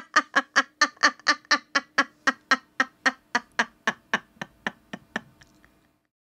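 A woman's rapid, staccato laugh: a long run of short, evenly spaced 'ah-ah-ah' pulses, about four or five a second, that fades out and stops shortly before the end.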